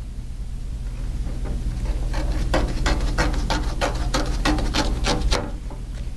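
Sheet of printmaking paper being torn along the edge of a steel ruler, a quick, irregular series of short crackling rips starting about two seconds in, as the print is torn down to size.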